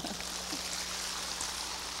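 A large audience applauding, a steady dense clapping.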